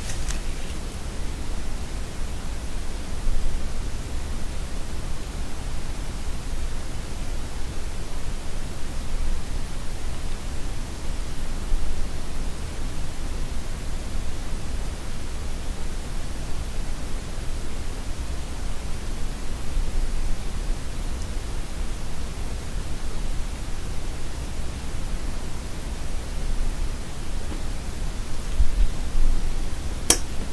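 Steady, even hiss with a low rumble underneath, unchanging throughout; no distinct glove or tapping sounds stand out.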